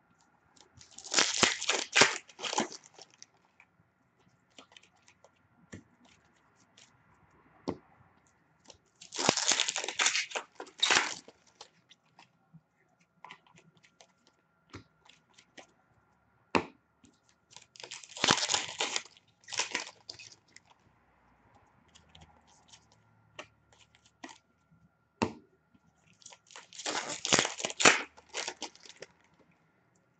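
Upper Deck hockey card pack wrappers being torn open one after another: four tearing bursts about nine seconds apart, each lasting a second or two, with faint clicks of cards being handled in between.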